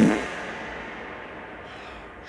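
A sudden hit followed by a noisy hiss that slowly fades away over about two seconds, an edited-in sound effect.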